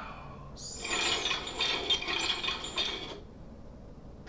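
A bright, jingling, shimmering sound effect that starts abruptly and cuts off after about two and a half seconds.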